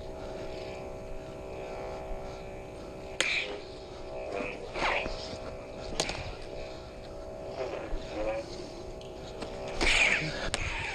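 Combat lightsabers' sound boards giving a steady buzzing hum, with swing whooshes and sharp clash hits about three seconds in, six seconds in and at the very end.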